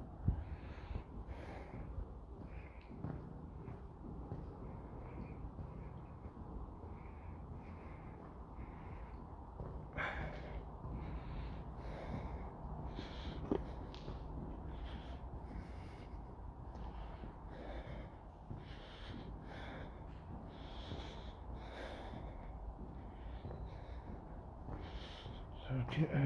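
Footsteps on the gritty floor of a tunnel, at walking pace, over a low steady rumble. There is a sharp click about ten seconds in.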